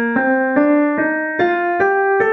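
Piano playing the B-flat major scale upward one note at a time, about two and a half notes a second, each new note a step higher.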